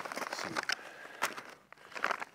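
Plastic food packets crinkling and rustling as they are handled and pulled from a pack, with a few sharp crackles.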